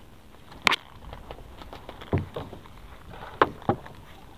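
Sharp knocks and clatters on a small boat as a fishing net is hauled in and worked by hand, over a low steady background. The clearest knock comes just under a second in, with two more close together near the end.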